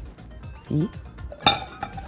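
A sharp glass clink about one and a half seconds in, with a short ring after it, as a glass bowl of cut carrots is tipped against the rim of a glass mixing bowl. Background music runs underneath.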